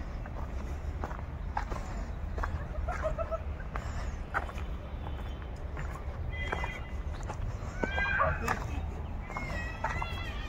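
Outdoor ambience: a steady low rumble with scattered faint clicks and short distant calls, which grow clearer from about six seconds in.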